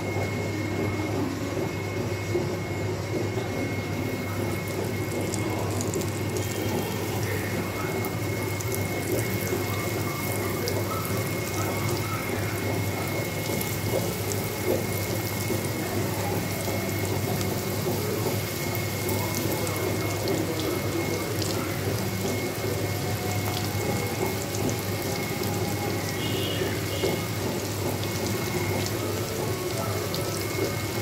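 Hot oil sizzling in a deep iron frying pan as pieces of food deep-fry, a steady sizzle with fine crackling that thickens a few seconds in. A steady low hum runs underneath.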